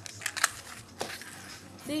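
Plastic bottle squeezed by hand to make the cloud inside reappear, its walls crackling in a few sharp clicks within the first second.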